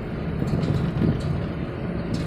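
Steady low hum of a car's engine and tyres heard from inside the cabin while driving along a road in third gear.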